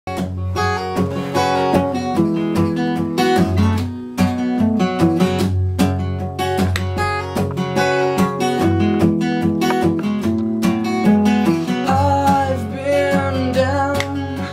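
Acoustic guitar playing an unaccompanied intro of chords, live and close to the microphone.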